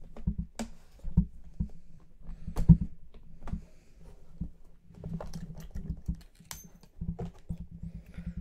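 Handling of a small aluminium briefcase: clicks and knocks as its metal latches are snapped open and the lid is lifted, the loudest knock about two and a half seconds in. A quicker run of small clicks follows in the second half, as a plastic card holder is handled inside the case.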